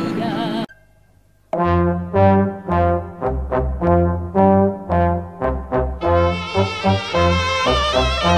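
A sung song cuts off under a second in, and after a brief near-silent gap, brass band music starts with a rhythmic tune carried on a strong bass line. More brass instruments join at about six seconds in.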